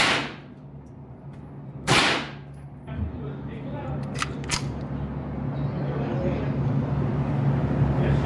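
Two shots from a Ruger 10/22 semi-automatic .22 LR rifle, about two seconds apart, each with a short ring-out. About four seconds in come two light metallic clicks from the rifle's action being handled, over a low steady hum that slowly grows louder.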